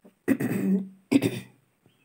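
A woman coughing twice, a longer rough cough followed by a shorter one.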